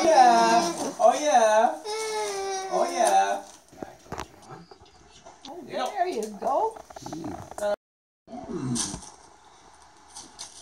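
High-pitched laughter for the first three seconds or so, then quieter light clicks and rattles as a folding metal music stand is handled and opened, with a short papery rustle near the end.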